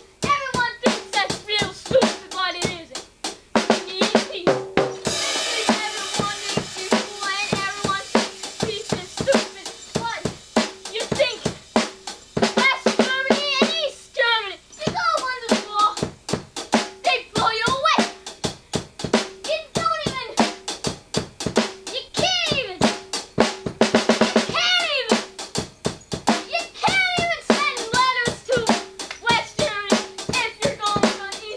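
Drum kit played in a steady, busy beat of bass drum, snare with rimshots and hi-hat, with a cymbal wash about five seconds in.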